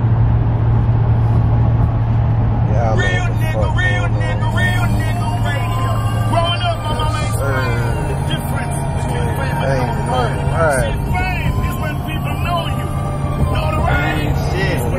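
Steady low drone inside a pickup truck's cabin at highway speed, stepping up in pitch about eight seconds in. Voices come in over it from about three seconds in.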